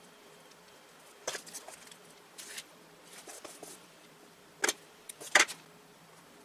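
Paper and craft materials being handled on a tabletop: a few short rustles and scrapes, then two sharp clicks near the end as a plastic glue bottle is taken up.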